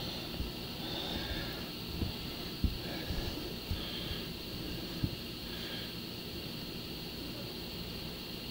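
Quiet room hiss with a few soft, scattered taps and knocks from hands handling a phone over a tabletop.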